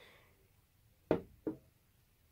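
Glass Jimmy Choo perfume bottle set down on a tabletop: two short knocks, about a second in and half a second later, the second one fainter.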